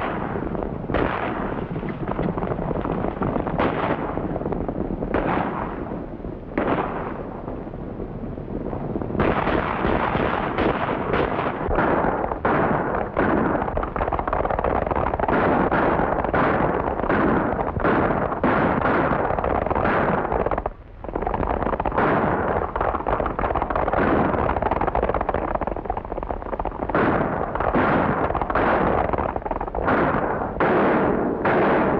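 Several horses galloping, with gunshots fired again and again. The shots come sparsely at first, then thicker and louder from about nine seconds in, with a brief break a little past the middle.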